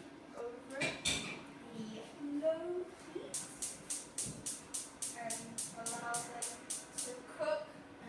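Gas hob's spark igniter clicking rapidly, about five ticks a second for about four seconds, as a burner is lit under a saucepan. Before it comes a single knock about a second in.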